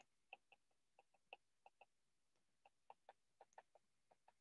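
Faint, irregular ticks of a stylus tip tapping on a tablet's glass screen while handwriting, with a short gap in the middle, over near silence.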